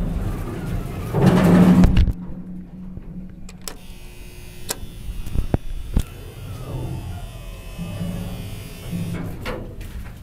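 Old Hitachi Build-Ace A rope-drive freight elevator in operation: a loud rumble with a low hum that stops abruptly about two seconds in, a few sharp clicks around five to six seconds in, then a quieter running hum.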